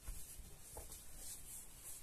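Faint rubbing and soft thumps of a colouring book being handled: hands on the cover and the paper sliding as the book is closed and moved away.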